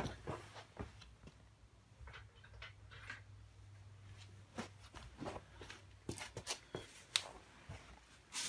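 Quiet, with a faint low hum that fades out about six seconds in and a scattering of light clicks and taps, more of them in the second half.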